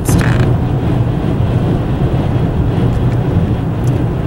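Steady low rumble inside a car's cabin, road and engine noise mixed with strong gusting wind buffeting the car. A brief rustle of a hand handling the camera about the first half second.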